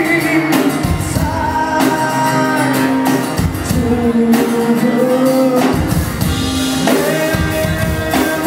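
Live rock band performing: sung lead vocals with held notes over strummed acoustic guitar and drums.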